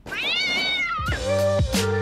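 A single meow-like call, rising then falling in pitch and lasting about a second. Background music with held notes and plucked strings then takes over.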